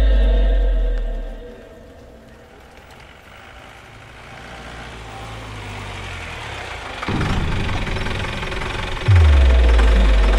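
Dramatic film background score: a deep sub-bass boom that drops in pitch and fades over the first second and a half, then a quieter swelling low drone. A rough rumbling noise comes in sharply about seven seconds in, and a second deep falling boom hits about nine seconds in.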